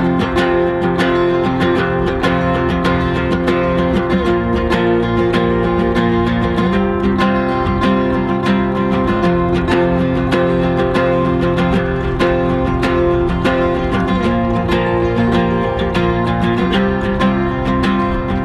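Two Takamine acoustic guitars strumming chords together in a steady rhythm, the chords changing every two to three seconds.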